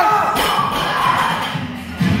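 A barbell loaded with red rubber bumper plates (135 kg) set down on the lifting platform after a deadlift, landing with a single thud about a third of a second in, over background music.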